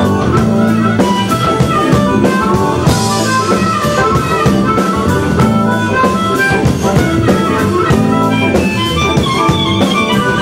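Live band playing a bluesy number, with a harmonica solo played into a microphone over electric guitar, bass and drum kit with a steady beat.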